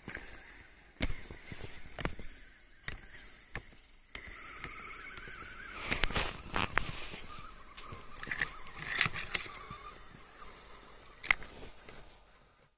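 Footsteps crunching in snow for the first few seconds. From about four seconds in, the steady, slightly wavering whine of a tracked radio-controlled vehicle's electric drive, with louder crunching bursts now and then and a sharp click near the end.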